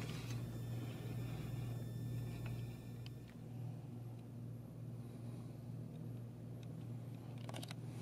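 Steady low hum of room tone, with a few faint clicks.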